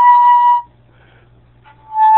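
Concert flute holding a steady note that stops about half a second in, then a break of about a second before a slightly lower note begins near the end.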